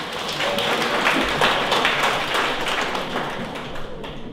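Audience applauding, the clapping swelling through the middle and fading away near the end.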